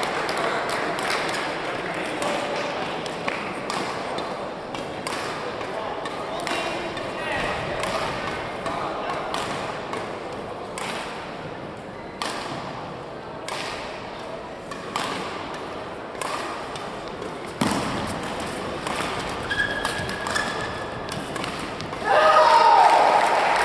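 Murmur of voices in a large sports hall, with scattered sharp knocks and taps throughout.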